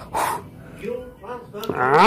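A person's voice making wordless sounds: a breathy burst at the start, then rising-and-falling vocal sounds that grow louder near the end.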